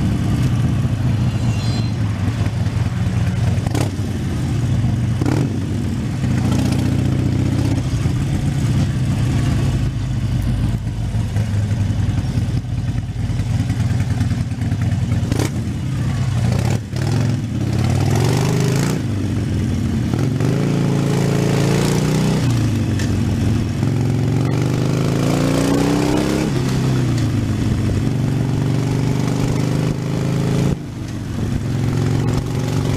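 Harley-Davidson Sportster 72's 1200 cc V-twin engine running as the motorcycle is ridden, heard from the rider's position. It holds steady for the first half, then rises and falls in pitch several times in the second half as the throttle is opened and closed.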